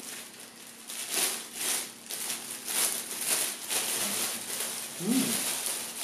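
Clear cellophane wrapping of a panettone crinkling and rustling as it is untied and pulled open by hand, in an irregular run of rustles.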